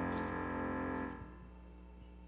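A worship band's final chord on guitar and keyboard ringing out and fading, then cutting off about a second in, leaving a faint steady low hum.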